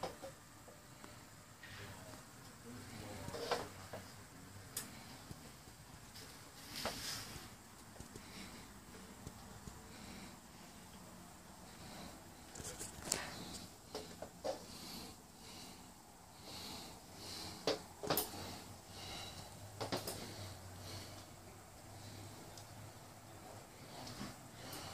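A quiet small room with faint, scattered noises: a few short clicks and brief breathy sniffs or breaths, with light rustling as people and the handheld camera move about.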